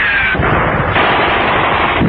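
Continuous din of rapid gunfire, with machine-gun fire on a battle soundtrack. The sound is thin, with no high end, as on an old newsreel recording.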